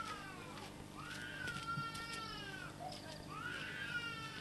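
A cat meowing: long drawn-out meows that rise and then fall in pitch, one starting about a second in and another near the end.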